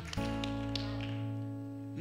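Soft live band music under a sermon: a held chord with a low bass note comes in just after the start and rings on, slowly fading.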